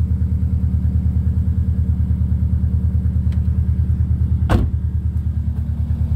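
Subaru Impreza WRX STI's turbocharged flat-four engine idling steadily with an even pulse. A car door is slammed shut about four and a half seconds in.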